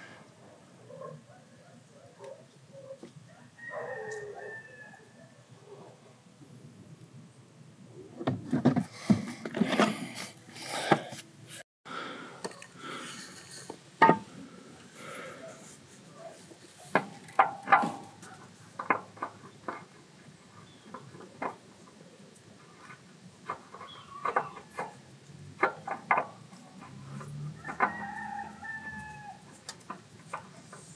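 Scattered sharp clicks and light knocks of hand work as a new spin-on oil filter is fitted under the car, with a faint animal call twice, once about four seconds in and again near the end.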